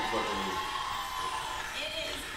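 Television audio from a daytime talk show: voices through the TV's speakers over a steady noisy background.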